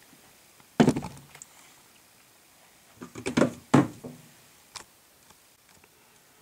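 Hard knocks and thunks of tools and small parts being handled and set down: one loud knock about a second in, a quick cluster of three or four knocks around three to four seconds in, and a lighter tap near five seconds.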